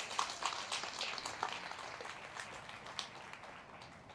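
Applause from a small congregation, the claps thinning out and fading away.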